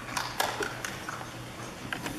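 Footsteps on a stage floor: a few irregular taps and clicks over a low steady room hum.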